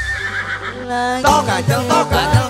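Live dangdut band music in a short break: the drums drop away under a high wavering tone, a brief held note sounds about a second in, and the beat comes back in soon after.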